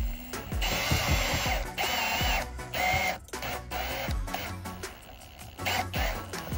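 Cordless drill with a step drill bit boring through a black trim panel, whining in three short bursts with pauses between, then running more lightly. Background music with a steady beat plays under it.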